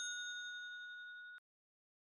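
Fading ring of a bell-like chime sound effect at the end of an outro jingle, cutting off suddenly after about a second and a half.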